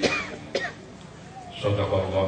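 A man coughing twice, sharply, into a handheld microphone; his speech resumes near the end.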